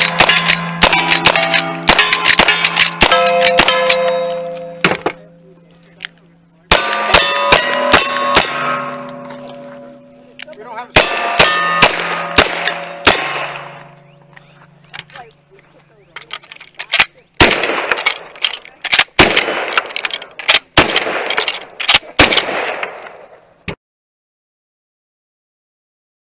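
Strings of gunshots at steel plate targets, first from a rifle and then from a single-action revolver, each hit leaving the steel plates ringing for a few seconds. The shots come in quick runs, with pauses between runs, and the last string, near the end, rings less.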